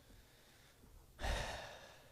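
A man's single audible breath close to the microphones, starting a little past a second in and fading over about half a second; before it, near silence.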